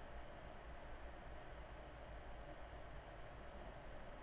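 Faint steady hiss with a low hum underneath: the room tone of the recording microphone, with no distinct events.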